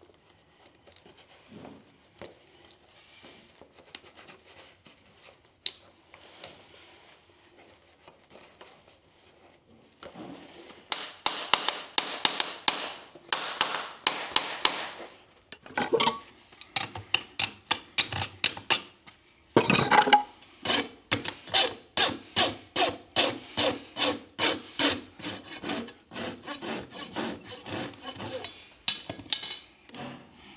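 Farrier's rasp filing a horse's hoof wall. After about ten quiet seconds of faint handling sounds, quick scraping strokes start, then settle into a steady rhythm of about two strokes a second.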